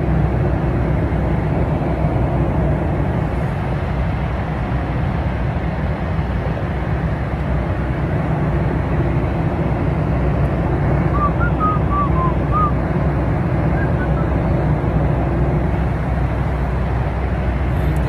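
Airliner cabin noise heard from a passenger seat: a steady low rumble of engines and airflow, unchanging throughout.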